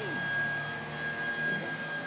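A steady low mechanical hum with a thin, constant high-pitched whine above it.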